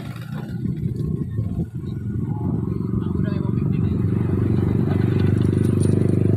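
A motorcycle engine idling close by, a steady low running sound that grows gradually louder from about two seconds in. Faint voices can be heard under it.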